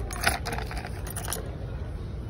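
Small metal keychain fittings clinking and jingling several times in the first second or so, over a low steady store background.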